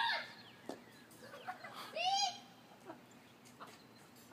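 Children's distant shouts: one call at the very start and another about two seconds in, each rising and then falling in pitch.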